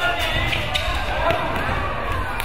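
A basketball bouncing on a hardwood gym floor, a few sharp knocks, under indistinct shouting from players and spectators.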